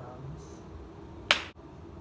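Quiet room tone with a single sharp snap a little past halfway through, followed by a brief dip in the background hiss.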